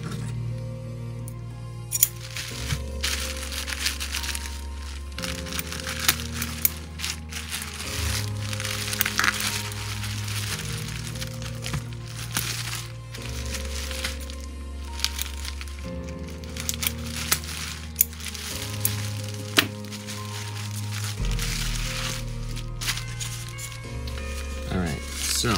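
Plastic bubble wrap crinkling with sharp crackles as it is cut open with scissors and pulled off, over background music with slow, sustained bass notes that change every few seconds.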